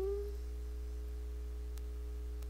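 A woman's hummed 'hmm' rising in pitch and ending about half a second in. It leaves a steady low electrical hum with a couple of faint steady tones in the recording.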